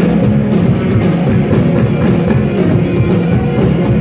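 Live rock band playing at full volume: electric guitars, bass guitar and drum kit, with cymbals struck in a steady beat.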